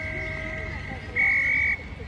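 Umpire's whistle: a fainter held note, then a short, loud, steady blast a little over a second in, blown at a tackle to stop play.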